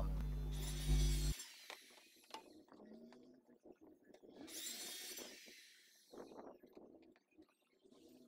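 Handheld circular saw run in two short bursts, about a second each, the second a little longer, each a high whine. Light knocks of boards being handled come in between. Background music with a bass hum cuts out about a second in.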